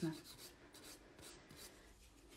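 Faint scratchy rubbing of a nail file, a few soft strokes.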